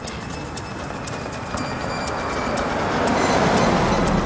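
Ambient electronic drone music: a wash of noise that swells steadily louder, with scattered sharp high clicks and a few faint held high tones.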